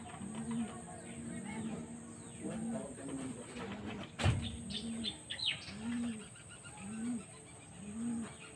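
A dove cooing, one low coo about every second, with higher, quicker bird chirps around five seconds in. A single sharp knock just after four seconds is the loudest sound.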